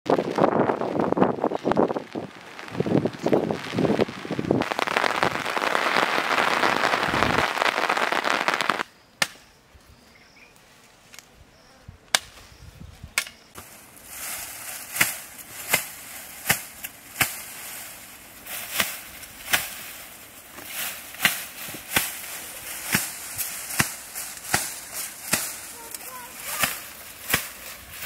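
Leafy cut branches rustling and swishing as they are handled and laid over a pit. A quieter pause follows, then a run of sharp cracks and snaps, roughly one or two a second, from wood and brush being worked.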